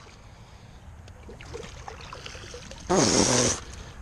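Largemouth bass being landed from the pond onto the grassy bank: faint water and rustling sounds over a low wind rumble on the microphone. A short loud burst of noise comes about three seconds in.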